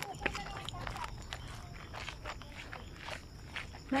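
Footsteps of people walking on a concrete path, a few irregular light steps over low handling rumble.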